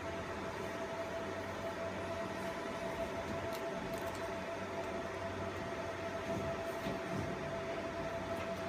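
Fiber laser marking machine humming steadily, with a constant mid-pitched tone over a low drone from its fans and electronics. A few faint clicks come through near the middle and again near the end.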